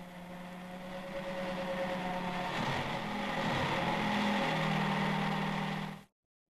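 Car engine running just after a cold start from frozen, a steady hum that builds in loudness and lifts then settles lower in pitch a little past halfway, ending abruptly.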